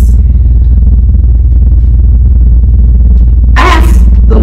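A loud, steady low hum fills a pause in a woman's preaching. Her voice comes back in briefly near the end.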